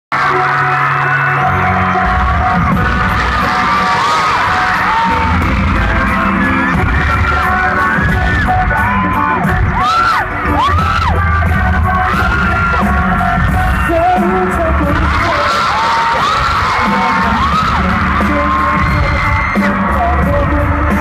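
Loud K-pop song played over a concert sound system with a heavy bass beat, heard from within the crowd. Fans scream and whoop over it again and again.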